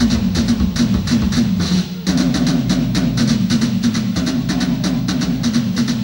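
Drum kit played live and amplified, a fast, even run of hits. It breaks off briefly about two seconds in, then carries on.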